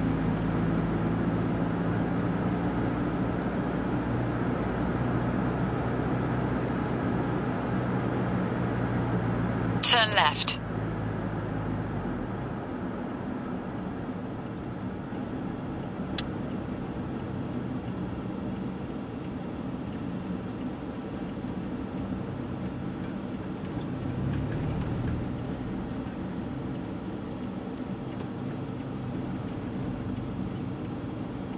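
Car interior road noise with a steady engine hum while driving, the engine note dropping away about twelve seconds in as the car slows in traffic. About ten seconds in, a brief, loud, high-pitched sweep that falls in pitch.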